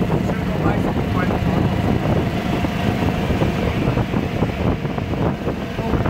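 Wind rushing over the microphone with the steady rumble of the vehicle being ridden along the street.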